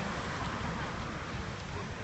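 Steady outdoor ambient noise: an even hiss with no distinct single source standing out.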